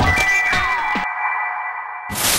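Background music sting: a sharp hit, then a held electronic tone with a falling swoop. About a second in the low notes drop out and a thin high tone rings on alone.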